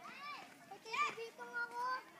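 Young children's voices calling out without clear words, ending in one drawn-out, steady high call.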